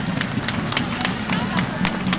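A small crowd applauding, the separate hand claps distinct, with a low murmur of voices underneath.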